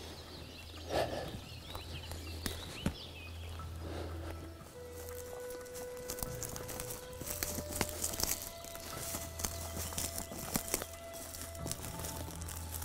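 Footsteps on the forest floor, leaf litter and twigs clicking and crackling underfoot, over background music of long held notes that shift up in pitch about seven seconds in.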